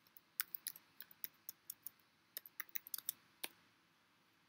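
Typing on a computer keyboard: a quick run of light key clicks, in two bursts with a short pause about two seconds in.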